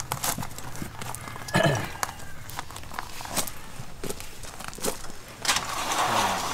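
Irregular clicks and scuffs of boots being unlaced and shifted on loose gravel, with a brief voice sound about one and a half seconds in and a scraping rush near the end.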